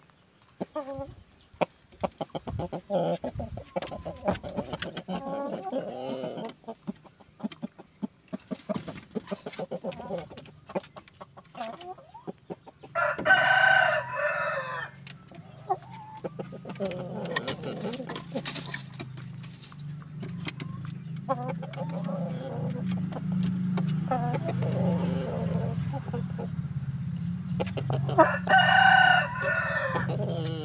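Pakhoy rooster crowing twice, once about halfway through and again near the end, each crow about two seconds long, with softer chicken calls between. A low steady hum builds underneath from the middle on.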